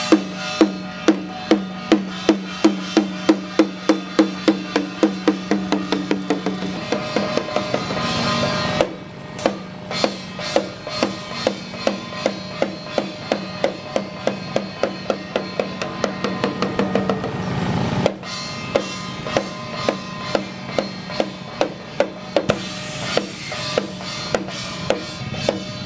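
Small red hand drum and brass cymbal beaten together as Chinese ritual festival percussion. The strikes speed up into a fast roll that breaks off about nine seconds in, build again to a roll around eighteen seconds, then go on as slower, evenly spaced beats.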